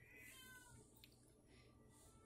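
Near silence: room tone, with one faint, short high-pitched call about half a second in.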